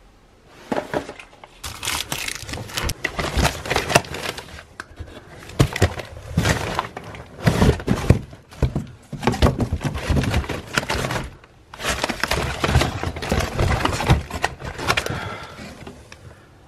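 Foil pouches and drink cans being handled and rummaged through in a cardboard box: dense rustling, crinkling and knocks in irregular bursts, with short pauses about five and eleven seconds in.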